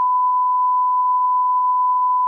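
A steady 1 kHz test-tone beep, the single pure tone that goes with colour bars.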